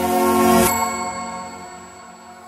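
Logo sting music: a held chord with a rising whoosh that ends in a bright metallic ding less than a second in. The ding and the chord then ring on and slowly fade.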